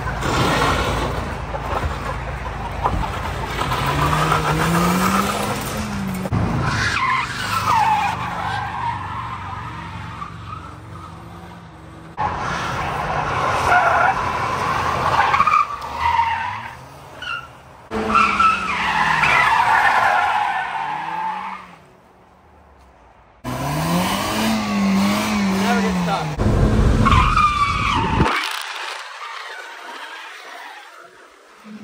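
Ford Focus's four-cylinder engine revving hard, its pitch rising and falling again and again as the car skids and spins its tyres with tyre squeal. The sound breaks off abruptly several times between takes, with a brief lull about two-thirds through.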